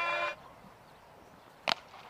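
A single sharp crack of a cricket bat striking the ball, a little over one and a half seconds in, heard faintly over quiet ground ambience: a clean hit that carries over the boundary for six.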